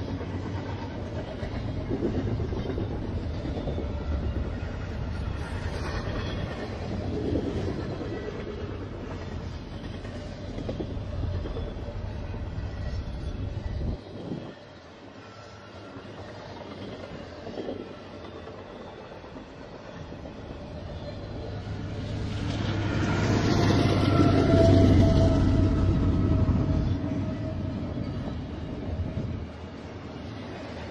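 Double-stack container train rolling past: the steady rumble and clatter of freight car wheels on the rails. It dips quieter about halfway through, then swells loudest a few seconds before the end, with a faint steady whine.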